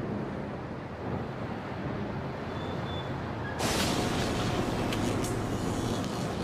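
Krone BiG X self-propelled forage harvester running under load while chopping standing maize: a steady engine and machinery drone. About three and a half seconds in it becomes louder and harsher, with a steady whine laid over it.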